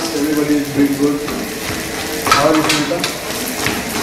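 Kitchen cooking sounds: a steady hiss like food sizzling, with a run of sharp clicks and clatter of utensils starting a little past halfway.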